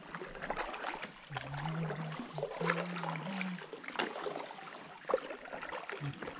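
Double-bladed kayak paddle dipping into calm water in uneven strokes, with splashes and water dripping and trickling off the blades. A faint low hum runs from about a second and a half in for two seconds.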